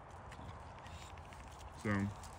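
Faint footsteps on a gravel path: a few soft, scattered ticks and crunches over low outdoor background noise.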